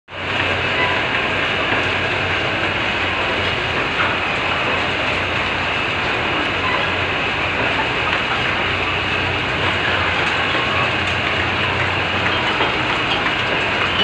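Poultry-house egg collection conveyor running steadily: a continuous mechanical rattle and clatter over a low motor hum.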